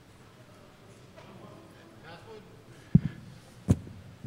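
Faint, distant voices from the audience, then two short low thumps less than a second apart near the end, from a handheld microphone being knocked as it is handled.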